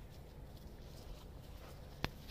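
Faint outdoor background: a low steady rumble, with a few soft ticks near the end.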